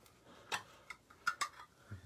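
A few light, sharp clicks and taps from a crystal specimen being handled under a UV light.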